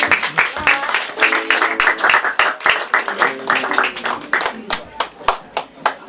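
An audience clapping, many hands at once in a dense, irregular patter, with voices heard over it.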